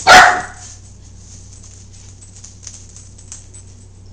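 A dog barks once, short and loud, just as the sound begins; after that only faint scattered clicks are heard.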